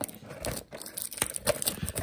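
Plastic shrink wrap being torn and peeled off a cardboard trading-card box, in scattered crinkles and crackling ticks.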